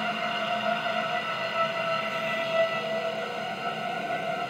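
Quiet passage of an electronic music track: a sustained synthesizer drone of several steady held tones, with no beat.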